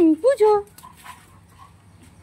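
A frightened dog whimpering: two short, high whines in the first half second, with a single spoken word over them.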